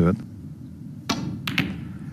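Sharp clicks of snooker balls as the shot is played: one click about a second in, then two more close together about half a second later, as the cue ball is struck and knocks into the reds.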